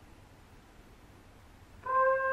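Near silence in a rest, then a solo trumpet enters near the end with a steady, sustained note.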